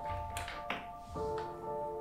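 Soft background music of held, sustained chords that change about a second in, with a few light taps and clicks of a small object being handled.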